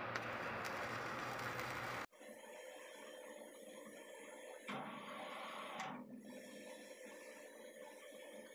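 Gas cutting torch hissing steadily as it burns a seized ball bearing off a steel shaft, cutting off abruptly about two seconds in. Quieter workshop noise follows, with a brief rush of noise lasting about a second midway.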